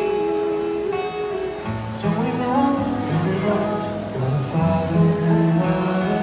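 Live concert music heard from the audience: singing accompanied by acoustic guitar.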